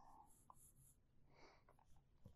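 Very faint pencil strokes on drawing paper, a few short soft rasps against near silence.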